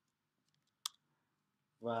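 A single sharp click of a computer keyboard key being pressed, a little under a second in, after a couple of faint ticks. A man's voice starts speaking near the end.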